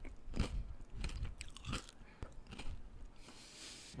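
Biting into and chewing a frozen coconut geladinho (Brazilian bagged ice pop) with a crunchy semisweet-chocolate shell: a series of close-up crunches, with a short hiss near the end.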